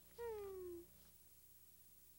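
A single short vocal call that falls steadily in pitch over about half a second.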